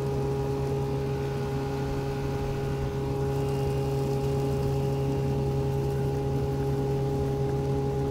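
1964 Johnson 5.5 hp two-stroke outboard motor pushing a loaded duck boat along at a steady cruising throttle, putting along with an even, unchanging drone.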